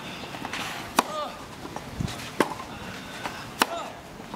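Tennis rally: sharp racquet-on-ball hits about every second and a quarter, with shoe squeaks on the court after two of them and a dull thud about two seconds in.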